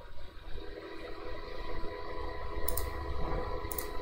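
Two short computer mouse clicks about a second apart, near the end, over a steady low background hum.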